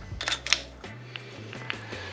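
A few light metallic clicks and taps as Ford Motorsport 1.72-ratio roller rocker arms are handled and fitted onto the cylinder head's rocker studs. Faint background music with a low bass line runs underneath.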